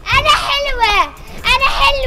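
A young girl's voice calling out loudly in short, high-pitched sing-song phrases that glide up and down.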